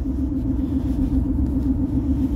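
Steady low rumble with a constant hum from a car heard inside the cabin as it drives.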